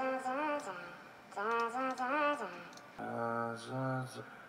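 Heavily auto-tuned sung vocal idea from a phone voice note playing back, its pitch locked to flat notes that jump in hard steps, in three short phrases. The last phrase, about three seconds in, sits noticeably lower in pitch.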